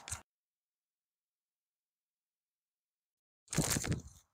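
About three seconds of dead silence, then near the end a half-second burst of crunching, rustling noise as a disc golf drive is thrown from the tee.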